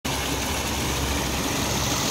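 Water pouring over rocks in a small stream cascade, a steady rushing with a deep rumble underneath.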